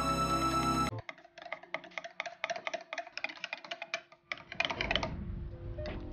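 Background music stops about a second in, then a wire whisk clicks rapidly and irregularly against the sides of a glass jug as it beats a thick cocoa mixture. A duller low sound joins the clicking near the end.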